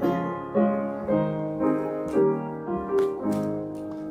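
Piano playing the introduction to a hymn, striking a new chord about every half second.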